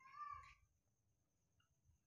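Near silence, broken at the start by one faint, short high-pitched squeak or mew lasting about half a second.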